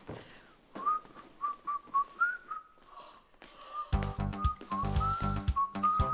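A whistled tune of short, quick notes. About four seconds in, background music with a steady beat joins under the whistled melody.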